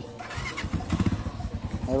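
A motorcycle engine running at low revs close by, its pulsing exhaust note slowly growing louder.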